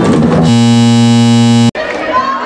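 Live band music gives way about half a second in to a loud, steady electric buzz on one fixed pitch. The buzz cuts off abruptly in a brief dropout, and the band music comes back quieter.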